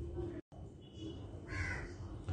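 A faint, short harsh bird call, caw-like, over low room hiss, with the audio cutting out completely for a moment about half a second in.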